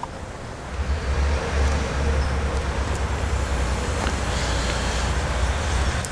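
A steady low rumble with an even hiss over it: outdoor background noise.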